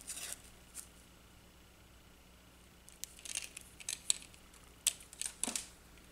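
Faint handling sounds of papercraft work: short rustles and light taps as a strip of glue dots and a pick tool are handled and a sequin is pressed onto cardstock. A few come right at the start, then small clusters from about three seconds in to near the end.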